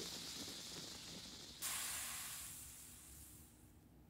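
Faint hiss of a small flame in a cartoon sound effect. It rises suddenly about a second and a half in, fades away over the next second or so, and leaves near silence.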